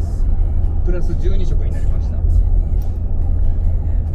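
Steady low rumble of road and drivetrain noise inside the cabin of a Mercedes-Benz G400d on the move, with its inline-six diesel cruising.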